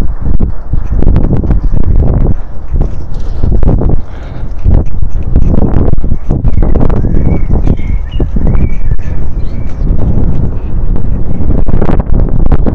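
Bicycle rattling and knocking as it rolls over a sidewalk of concrete paving stones, with a steady low rumble of wind on the microphone.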